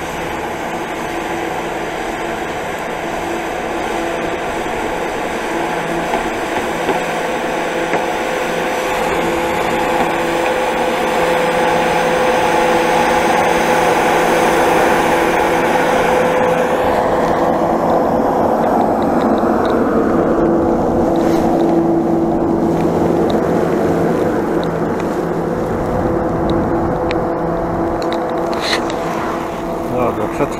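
Snowmaking cannon running close by: a loud, steady whirr with several constant hum tones under a hissing spray. It grows louder toward the middle, then the high hiss falls away after about 17 seconds. A few sharp clicks come near the end.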